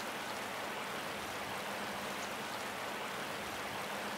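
Steady rush of a shallow river flowing over rocks, with a faint low hum under it.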